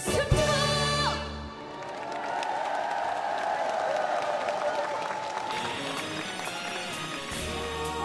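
A live band's song ends on a final held chord about a second and a half in, and a large crowd claps and cheers. Near the end the band strikes up the next song.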